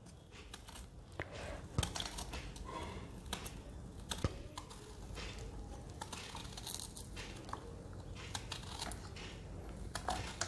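Raw green banana being cut into rounds over a steel bowl of water: scattered faint clicks and scrapes of the blade and of slices falling against the bowl.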